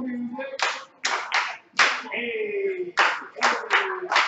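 Hand claps, about seven, in two short runs. Between them a woman's voice calls out in long notes that slide downward.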